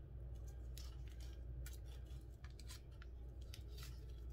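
A green pleated wrapper cup crinkling as a mochi is peeled out of it by hand: a run of short, irregular crackles over a steady low hum.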